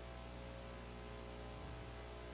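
Faint steady electrical mains hum with a light hiss, nothing else happening.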